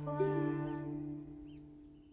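The closing ukulele chord of a song ringing out and fading away. Small birds chirp over it, with a quick run of chirps near the end.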